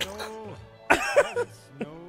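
Men laughing and a cough over steady background music. There is a short sharp vocal burst at the start, and the loudest burst of laughter comes about a second in.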